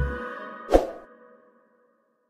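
Subscribe-button animation sound effect: a last low thud with ringing tones at the start, then a single sharp pop about three quarters of a second in, after which the ringing fades out.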